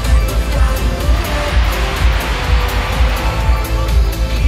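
Loud live pop music over an arena's sound system, with a heavy bass and a steady beat.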